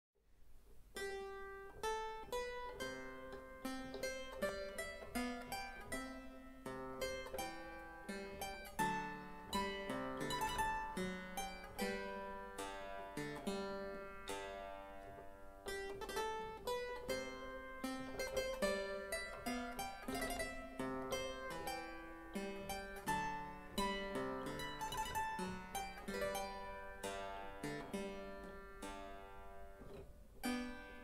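A Dolmetsch clavichord playing a 17th-century English almand in several voices, tuned in an unequal temperament; the notes have a soft, plucked-sounding attack and begin just after the start, out of silence.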